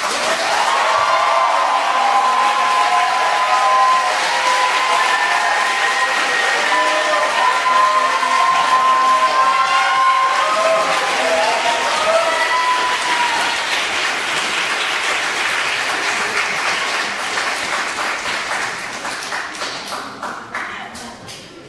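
Audience applauding in a reverberant recital hall, starting abruptly as the piano stops, with voices calling out over the clapping for the first dozen seconds; the applause thins out near the end.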